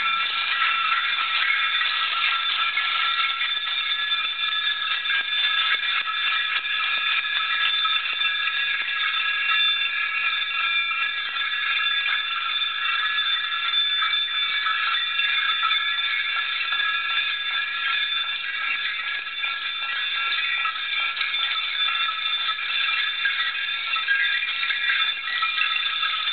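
Small metal bells jingling without a break in a live solo percussion piece, a dense shimmer over several high ringing tones.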